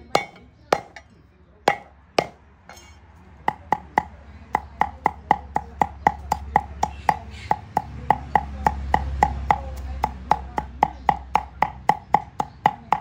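Heavy cleaver chopping garlic on a thick round wooden chopping board. First a few separate blows, then from about three seconds in a steady run of chops, about four a second, each knock with a short wooden ring.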